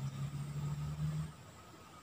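A low, steady motor hum that fades away just over a second in.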